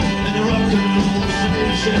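Live rock band playing an instrumental passage: electric guitars over bass and drums, with no vocals.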